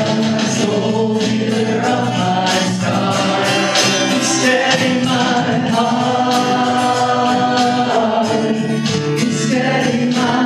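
A worship song, sung by a man to a strummed acoustic guitar.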